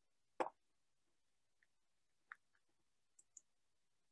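Near silence with a few faint, short clicks: one just under half a second in, a smaller one a little past two seconds, and two tiny ones near the end.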